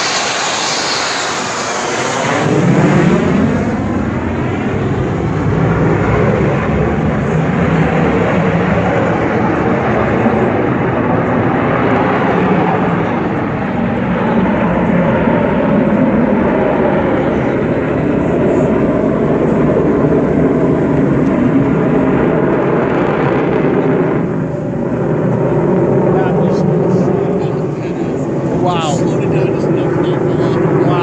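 USAF Thunderbirds F-16 Fighting Falcon jet passing overhead, its pitch falling in the first couple of seconds, followed by a loud, sustained jet roar that dips briefly near the end.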